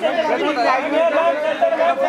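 Several people talking over one another at once: overlapping crowd chatter and shouted calls.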